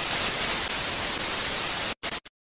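Television static: a steady, even hiss that cuts off suddenly near the end.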